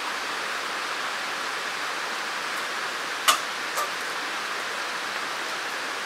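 Steady hiss of rain falling outdoors. A little over three seconds in, two sharp clicks come about half a second apart.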